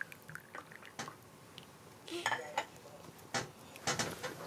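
Light clinks of porcelain teacups and saucers, a few sharp taps, two of them close together near the end, as tea is softly poured into a cup.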